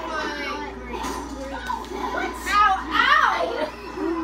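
Children's high-pitched voices calling out and squealing, loudest between about two and a half and three seconds in.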